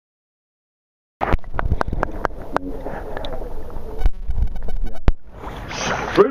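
Silence for about a second, then loud wind rumble on an outdoor camera microphone, broken by many sharp knocks from the handheld camera being moved.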